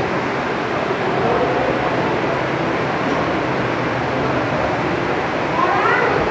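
Steady background noise of a crowded room, with faint voices murmuring in it and a short rising sound near the end.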